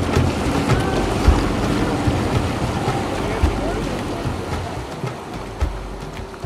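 Outboard motor of a Zodiac inflatable boat running on open water, with water rushing past, wind buffeting the microphone and indistinct voices; the whole sound slowly grows quieter toward the end.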